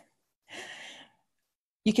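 A woman's short audible breath, about half a second long, in a pause between sentences. Speech resumes near the end.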